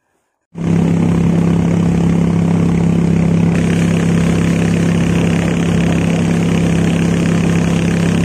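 A boat's engine running steadily at constant speed, with one strong low hum; it cuts in suddenly about half a second in.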